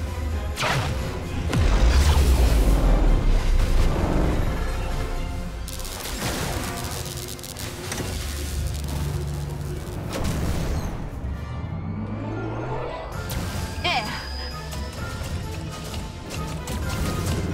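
Cartoon superpower sound effects over a dramatic music score: a deep, heavy boom in the first few seconds, then electric crackling and whooshes as the power surges through a pylon.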